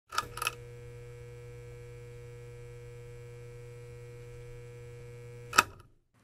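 Two sharp clicks, then a steady electrical hum with a faint high whine over it. The hum ends with another click about five and a half seconds in.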